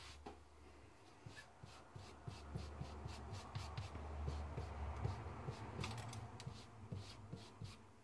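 Ink stamp pad rubbed and dabbed directly over stitched fabric: a run of short scuffing strokes and light taps, a few a second, busiest in the middle.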